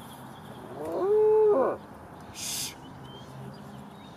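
A cow mooing once: a single call of about a second that rises, holds steady and falls away. A short hiss follows about a second later.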